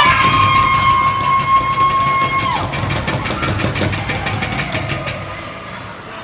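Ice rink horn sounding one long steady blast, swelling up to pitch at the start and cutting off after about two and a half seconds. A quick run of sharp clicks follows for about two seconds.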